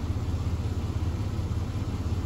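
GMC Jimmy's 4.3-litre V6 idling with a steady, even low hum while its mass airflow and MAP sensors are unplugged.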